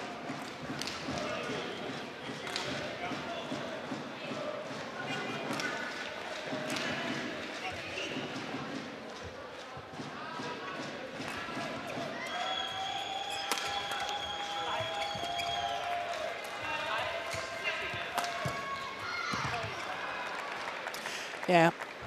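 Arena sound of a badminton doubles match: crowd voices between points, then a rally of sharp racket-on-shuttlecock hits and footwork on the court, with a long held call from the crowd in the middle.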